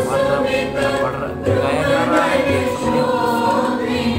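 Women's choir singing together through microphones, voices held and gliding on long sung notes.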